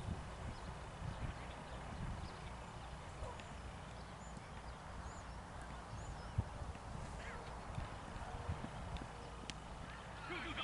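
Outdoor ambience of low, uneven wind rumble on the microphone, with a few faint bird chirps and a single sharp knock about six seconds in.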